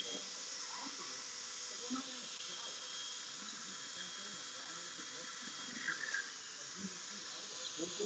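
Steady hiss of air moving through the shop's open vents and fans, with faint voices murmuring in the background.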